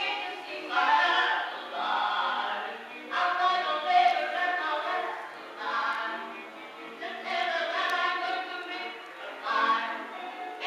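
Music of a choir singing in long held phrases, with little bass.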